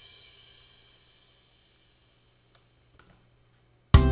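The tail of a reggae beat's playback fading out over the first second, then near silence broken by a few faint clicks, before the beat starts again abruptly just before the end.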